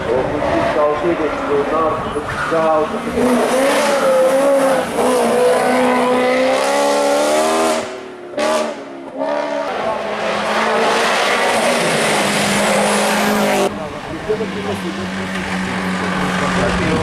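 Hillclimb race car engines revving hard. The pitch rises and falls with throttle and gear changes. The sound breaks off about eight seconds in, and changes abruptly near the end, where another car holds a steadier note.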